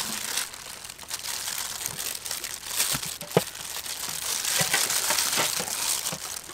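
Dragon fruit being peeled by hand and sliced: steady crinkling and rustling of the skin pulling away, with a few sharp clicks of the knife on the board, the loudest about three and a half seconds in.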